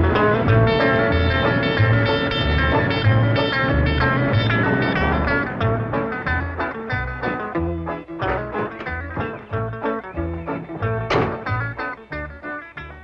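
Background music of plucked strings over a steady, bouncing bass line, growing quieter in the second half.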